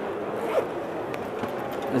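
Zipper on a LeRoy Accessory Bag D3 fabric tackle bag being pulled open around its lower compartment: a steady, unbroken rasp lasting the full two seconds.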